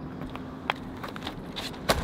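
Quiet outdoor background noise with a faint steady hum and two brief clicks, the sharper one near the end.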